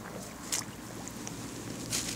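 Dry reed and grass stalks crackling as they are disturbed: one sharp crackle about half a second in and more crackles starting near the end, over a steady low hum.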